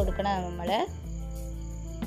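A woman's voice for about the first second, then steady background music with a thin high whine.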